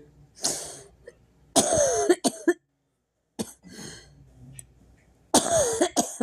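A person coughing loudly, four separate coughs; the two strongest come about a second and a half in and a little after five seconds in.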